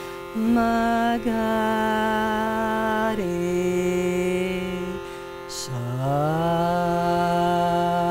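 A woman sings long held notes of a modal Indian scale on Sanskrit note syllables (sa, re…) over the steady drone of a hand-pumped shruti box. She holds one note, steps down to a lower one, takes a breath about two-thirds of the way through, then slides up from low into the next held note.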